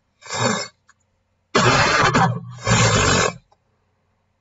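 A person coughing three times on near silence: one short cough, then two longer, louder ones.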